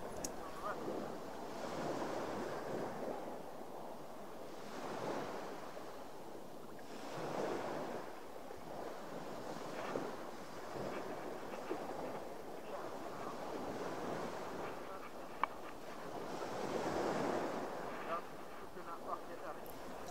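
Sea water lapping and washing beside a boat at a low level, swelling and easing every two to three seconds, with one sharp click about fifteen seconds in.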